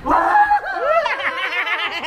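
A shrill, high-pitched cackling laugh that starts abruptly, then breaks into a rapid run of short rising-and-falling notes.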